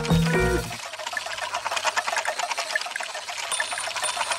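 The Ninky Nonk train's sound effect: a fast, dense, ticking rattle that takes over about a second in, as a short run of musical notes ends. A thin high tone joins near the end.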